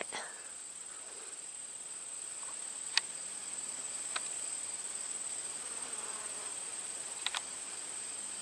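Steady high-pitched trill of insects in the background, with a few faint clicks.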